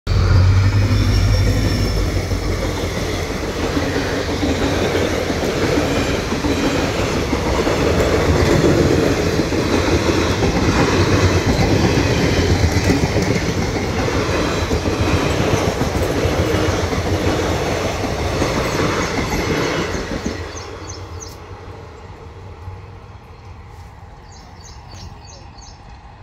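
Passenger express train's coaches running past close by, a dense, loud rumble of steel wheels on rail with many rapid knocks. The sound falls away about twenty seconds in as the end of the train passes.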